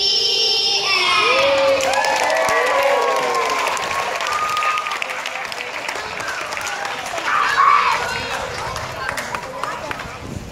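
Audience applauding and cheering, with voices calling out over the clapping during the first half.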